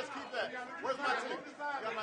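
Men's voices talking over one another in a crowded room: indistinct chatter.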